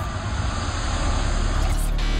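A swelling whoosh with a deep low rumble beneath it, building steadily louder: the sound effect of an animated logo sting.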